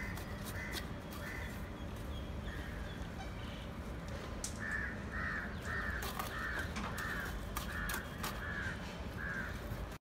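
A crow cawing repeatedly: a few faint caws at first, then a run of about nine louder caws, roughly two a second, through the second half. Scattered sharp taps of bricklayers' trowels on brick sound beneath it.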